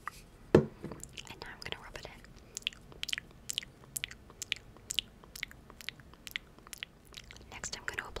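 Close-miked ASMR sounds: soft wet clicks, several a second, with one dull thump about half a second in.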